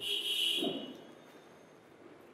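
A short, high electronic buzzing tone, about two-thirds of a second long, that fades out. Then faint room tone.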